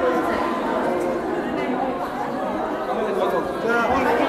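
Many people chatting at once in a large church hall, a continuous babble of overlapping voices with no one voice standing out.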